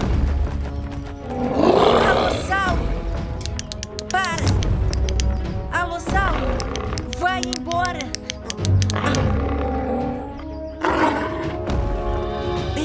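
Dinosaur roar sound effect, once about a second and a half in and again near the end, with high shrieking cries in between, over dramatic background music.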